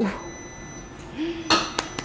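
Two sharp clicks about a second and a half in, a third of a second apart, from an oven being handled; a short 'ooh' at the start.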